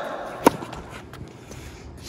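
A single sharp pop of a tennis racket striking a ball about half a second in, followed by a few faint ticks.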